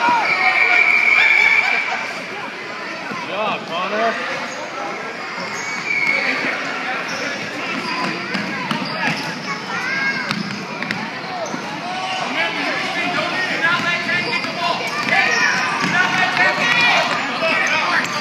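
Basketball bouncing on a hardwood gym floor, with voices of players and spectators calling out around it.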